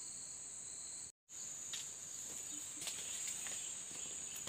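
Steady, high-pitched insect chorus, crickets or cicadas, droning without a break except for a brief cut-out of all sound about a second in, with a few faint clicks after it.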